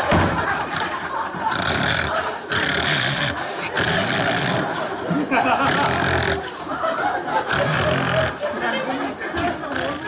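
A man snoring in exaggerated stage fashion: loud, noisy snores one after another, roughly a second apart.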